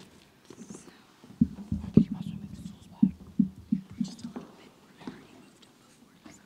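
Irregular bumps, knocks and rustling picked up close on the lectern microphone as someone takes position at it, mixed with quiet whispered words. The knocks cluster from about a second and a half in to about four and a half seconds, then thin out.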